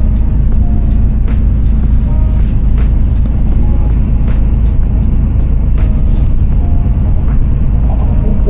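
Loud, steady low rumble of a coach bus driving on a highway, heard from inside the cabin, with a few light knocks over it.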